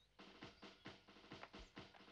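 Faint, quick, light drum taps from the background score, about five a second.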